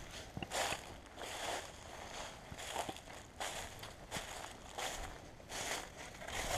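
Footsteps crunching through a thick layer of dry fallen leaves, a soft step about every two-thirds of a second.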